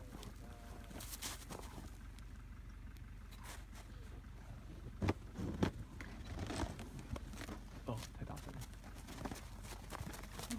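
Scattered soft knocks and rustles as an Icelandic horse's muzzle and forelock brush against the phone, over a steady low rumble of wind on the microphone.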